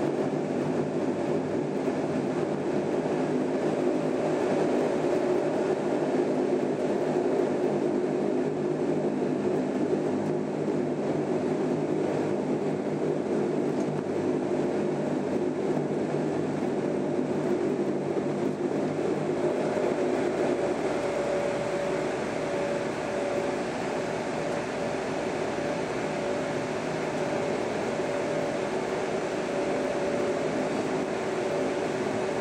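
Dash 8-300's Pratt & Whitney PW123 turboprop engines and propellers running at low taxi power, heard inside the cabin: a steady drone with several held tones. A higher hum grows stronger about two-thirds of the way through.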